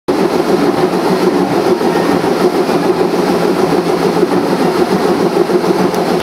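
Recycling plant machinery running steadily and loudly, with a constant low hum under a dense mechanical noise.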